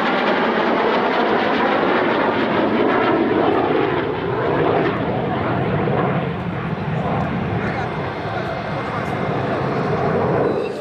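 Jet noise from Slovak MiG-29AS fighters, twin RD-33 turbofans, flying a low display pass. A steady, loud rushing sound, with sweeping bands in the first couple of seconds, easing slightly past the middle as the jets draw away.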